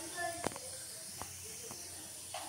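Hot oil sizzling with black seeds in an aluminium kadai: a faint steady hiss broken by three sharp pops, the first and loudest about half a second in.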